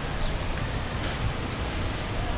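Outdoor background noise: a steady low rumble under an even hiss, with a few faint high chirps in the first second.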